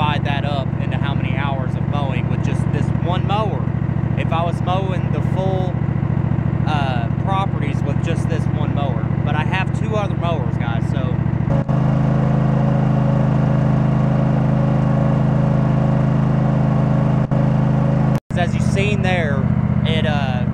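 A Cub Cadet RZL zero-turn mower's engine running steadily at full throttle. It runs under a man's voice at first, then on its own and louder from a little past halfway, with a brief dropout near the end.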